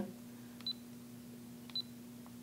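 Two short high-pitched beeps about a second apart from a Fujifilm FinePix HS20EXR digital camera, its key-press confirmation tone as the directional pad is pressed. A faint steady hum runs underneath.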